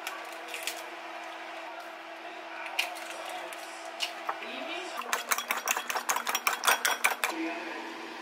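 Eggs cracked against a ceramic bowl, a few separate sharp taps, then from about five seconds in a quick run of clinks for about two seconds as a fork beats the eggs in the bowl. A steady low hum runs underneath.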